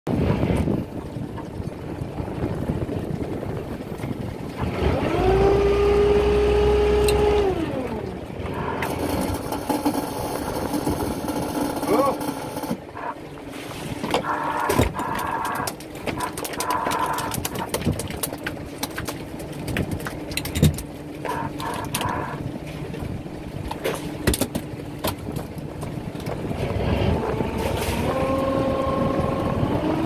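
Fishing boat's engine running steadily, with a motor whine that rises, holds for about two seconds and falls about five seconds in, and climbs again near the end. Voices are heard now and then.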